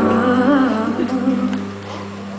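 Song intro: a woman's voice vocalizing a wordless, wavering melody over a sustained accompaniment chord, the voice fading out about halfway through.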